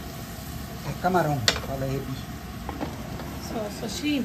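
Shrimp frying in oil in a non-stick pan, a faint steady sizzle, as a spatula stirs them, with one sharp tap of the spatula on the pan about one and a half seconds in. A voice is heard briefly about a second in.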